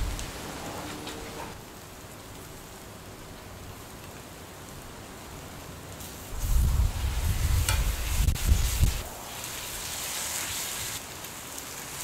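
Beef patties sizzling on a grill inside wire grill baskets, a steady hiss of fat cooking on the heat. About halfway through, a low rumble comes up for a few seconds with a couple of clicks, and then the hiss turns brighter.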